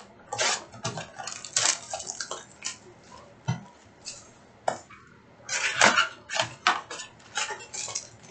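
Trading card packs being pulled out of a cardboard hobby box and handled: a string of irregular crinkles, rustles and light clacks, busiest a little past halfway.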